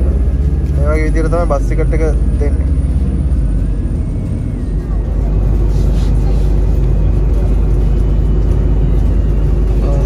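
Bus engine and road noise heard inside the passenger cabin while the bus drives, a steady deep rumble that grows a little louder about halfway through.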